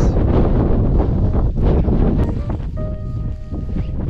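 Wind buffeting the camera's microphone in a loud, low rumble on an exposed hillside. From about two and a half seconds in, a few held music notes sound faintly over it.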